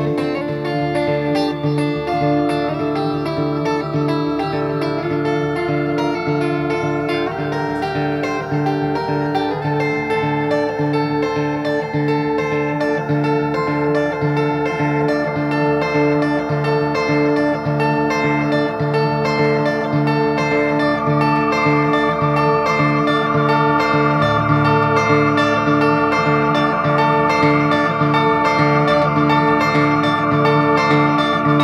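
Live guitar instrumental break in a slow blues song, with steadily picked rhythmic notes and long held higher notes over them. It grows a little louder in the second half.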